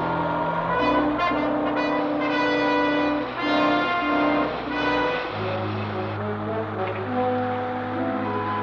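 Orchestral TV score led by brass: held notes in short repeated phrases, with a low sustained note coming in about five seconds in.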